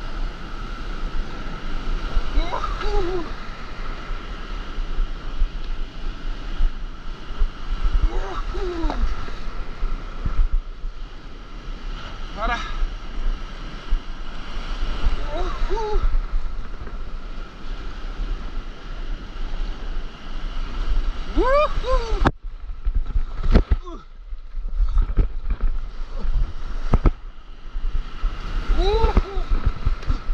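Breaking whitewater surf rushing around a stand-up paddleboard, heard close on an action camera with wind on the microphone. The paddler gives short whoops every few seconds, each rising then falling in pitch. About two-thirds in, the sound suddenly goes dull for a few seconds with several knocks as a wave washes over, then the rush returns.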